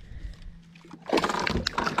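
A hooked largemouth bass thrashing and splashing at the water's surface beside the boat, starting about a second in.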